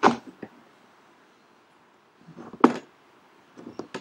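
Hands pressing and smoothing a vinyl sticker onto a go-kart's plastic nassau panel, making a few short rubbing and handling noises. One comes right at the start, the loudest about two and a half seconds in, and a few small clicks near the end.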